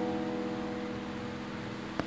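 Electric guitar chord ringing out and slowly fading, several notes sustaining together. A small click right at the end.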